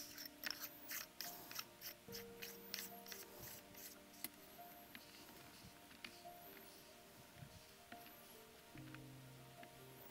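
Faint small metallic clicks and scrapes of a nose housing nut being threaded by hand onto the nose housing of a battery riveting tool, thickest in the first few seconds and sparse after, with soft background music underneath.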